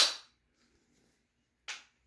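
A sharp metallic snap from a Taurus CT9 carbine's charging handle and bolt closing, followed by a faint click near the end.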